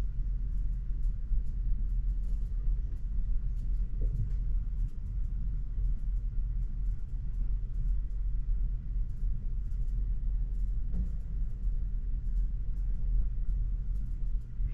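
A steady low rumble with faint, scattered clicks over it.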